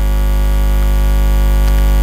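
Loud, steady electrical mains hum in the live sound feed: a low buzz with a row of higher steady tones above it, unchanging throughout.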